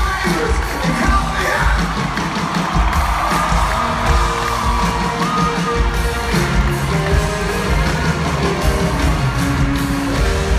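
Live rock band playing at a concert, with steady bass notes changing every second or so, heard from inside the audience with crowd yells and whoops over the music.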